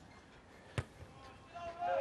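A rugby ball struck once by a place-kicker's boot, a single sharp thud about a second in, on a conversion attempt from the touchline.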